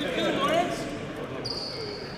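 Several people talking at once in the background, with no single clear voice. A thin, high, steady tone starts about one and a half seconds in.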